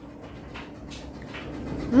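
Low kitchen room tone with a couple of faint ticks, then near the end a woman's drawn-out "mmm" that rises and then falls in pitch.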